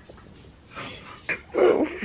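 Stifled laughter held back behind a hand: quiet at first, then a few short, muffled bursts in the second half, the loudest near the end.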